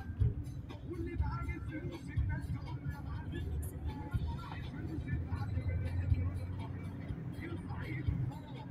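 Steady low rumble of a car's engine and tyres heard from inside the moving car's cabin.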